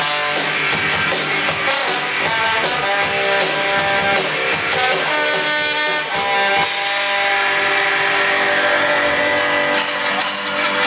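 A live band of electric guitar, drum kit and trombone playing rock with held horn notes over a drum beat. About two-thirds of the way through, the beat stops and the band holds a ringing chord.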